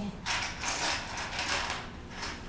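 Plastic checkers from a Connect Four-style game clattering against each other and the plastic, a run of rattles lasting about a second and a half.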